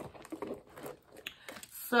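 Faint rustling and a few light clicks from a small leather crossbody bag being handled and closed.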